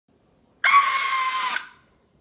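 A high-pitched scream: one shrill note held steady for about a second, then fading out.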